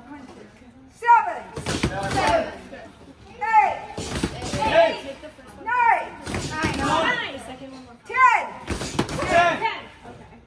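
Boxing gloves smacking into focus mitts in a set of double jabs, with short sharp impacts between loud shouted counts. The counts are called out and echoed by the class about every two and a half seconds, four times.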